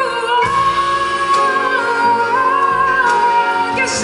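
A woman singing live into a handheld microphone, holding one long note that rises a step about halfway through.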